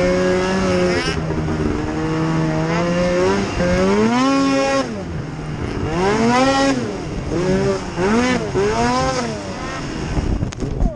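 Snowmobile engine at speed under the rider, steady for the first few seconds, then revving up and dropping back several times, with quick short throttle blips near the end.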